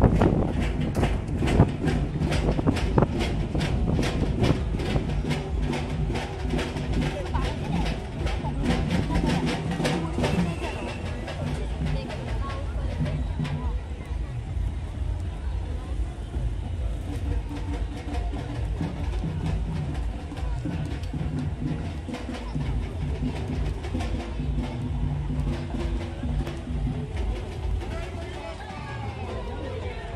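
A group of voices chanting, with a fast, even rhythmic beat through roughly the first twelve seconds that then fades out. A steady low rumble runs beneath.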